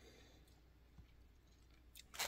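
Near silence: room tone, with one faint click about halfway through.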